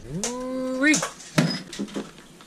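A man's drawn-out, frustrated groan, falling in pitch and then held for most of a second, followed by a few short sharp clicks and knocks.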